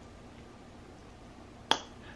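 Quiet room tone, then a single short, sharp click near the end.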